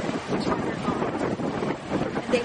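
Wind blowing across an outdoor microphone, a steady rushing noise, with a voice faintly audible beneath it.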